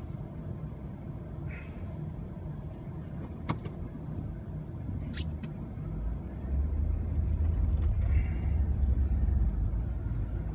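Pickup truck engine running, heard from inside the cab; about six seconds in, its low rumble grows louder as the truck pulls ahead through deep snow. A single sharp click about three and a half seconds in.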